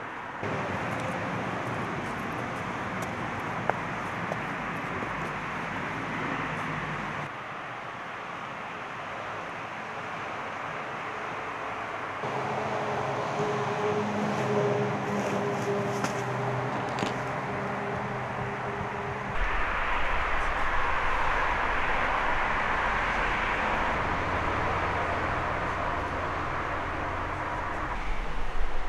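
Steady outdoor background noise with a low, traffic-like rumble, changing abruptly several times. From about twelve to nineteen seconds a steady drone hums within it, and after that a deeper rumble takes over.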